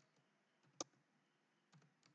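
A single computer keyboard keystroke a little under a second in, with a much fainter tick near the end; otherwise near silence.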